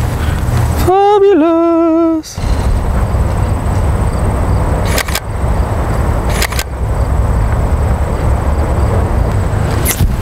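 Wind buffeting the microphone, a steady loud low rumble throughout. About a second in, a person lets out a drawn-out wordless "ooh" lasting about a second, and two short clicks come later.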